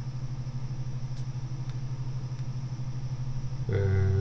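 Steady low electrical hum with a faint hiss; a man starts speaking just before the end.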